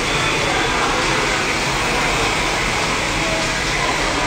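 Steady, loud rushing noise with faint, indistinct voices underneath.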